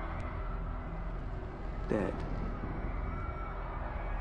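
A steady low rumbling background ambience runs under a man's voice, which says the single word "Dead" about two seconds in.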